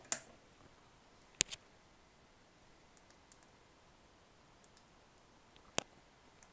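Scattered single clicks of a computer's controls being worked at a desk, about seven in six seconds, the first the loudest with a short ring after it.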